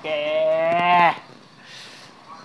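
A cow mooing once, a single steady call lasting about a second.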